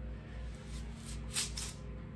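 Copper wire being yanked out of its yellow plastic insulation sleeve with plier wire cutters: a few short scraping swishes over a low steady hum.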